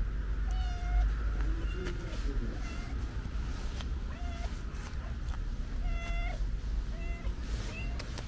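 Stray tabby cat meowing repeatedly in short calls, about one every second, over a low rumble.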